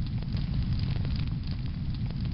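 Fire sound effect: a steady low rumble of flames with a dense scatter of crackles.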